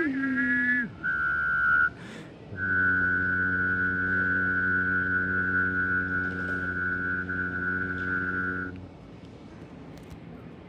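One person whistling and singing at the same time: a short whistled phrase over a sung note, a brief gap, then a long held whistled note above a low sung note. Both stop together near the end, leaving quiet room sound.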